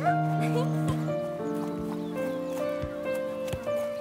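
Soft film-score music with long held notes that shift chord every second or so, with a few short children's voice sounds over it, clearest at the start.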